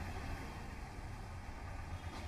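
Faint, steady low rumble of vehicle and traffic noise from the bus depot, picked up by the field reporter's microphone on the live feed.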